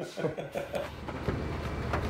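A man's voice briefly at the start. About a second in, a steady low rumble of machinery comes in and grows louder, like a vehicle engine running.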